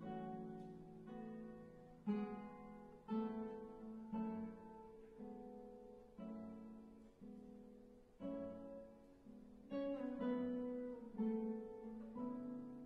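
Two classical guitars playing a duo piece: plucked notes and chords struck about once a second, each ringing out and fading before the next.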